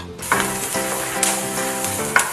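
Diced green pepper and onion sizzling in hot oil in a nonstick skillet, the hiss starting suddenly just after the start and holding steady. Background music with held tones plays underneath.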